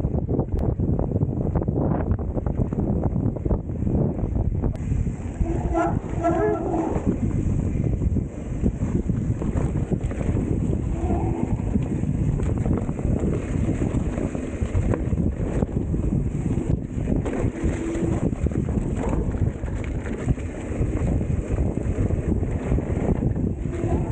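Wind buffeting the microphone over the rumble and rattle of a mountain bike riding fast down a bumpy dirt trail. A brief pitched sound is heard about six seconds in.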